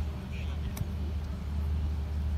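A golf wedge striking a ball on a chip shot: a single short, sharp click a little under a second in, over a steady low hum.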